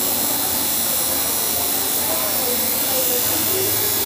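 Electric tattoo machine buzzing steadily.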